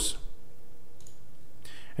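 A faint computer mouse click about a second in, over low room hiss, with a soft breath near the end.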